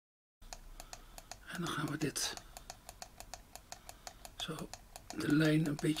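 Fast, evenly spaced clicking of computer input, several clicks a second, starting after a brief moment of dead silence, while a man speaks briefly in Dutch.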